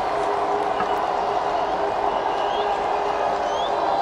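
Cricket ground crowd ambience: a steady murmur of spectators, with a few faint short rising chirps above it.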